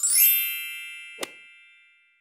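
A bright chime sound effect: one strike of several high ringing tones that fades away over about two seconds, with a short soft click about a second in.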